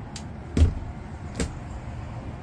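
Overhead cabinet door in a travel trailer being swung open and shut by hand: a thud about half a second in and a click a little after, over a low steady background rumble.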